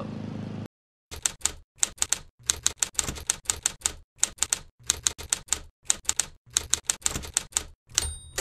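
Typewriter sound effect: rapid mechanical key strikes in small clusters of two or three clicks, about every half second.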